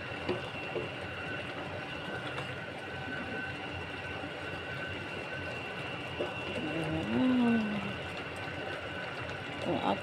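Wooden spatula stirring jackfruit simmering in coconut milk in a stainless steel pot, over a steady machine hum with two faint, steady high whines. A voice hums a short gliding note about seven seconds in.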